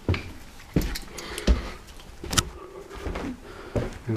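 Footsteps climbing carpeted stairs: about six dull thumps, one roughly every three-quarters of a second.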